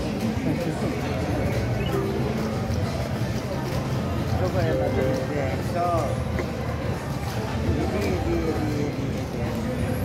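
Casino floor din: steady background chatter of voices mixed with electronic slot machine tones and jingles, with no single sound standing out.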